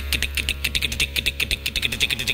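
Vocal percussion into a stage microphone: a fast, even run of sharp mouth clicks, about seven or eight a second, over a steady low hum.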